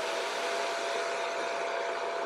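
Battery-powered toy bubble machine running: its small fan motor whirs with one steady hum over an airy rush, blowing out bubbles.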